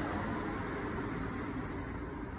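Steady low rumble and hiss of background noise, even throughout with no distinct events.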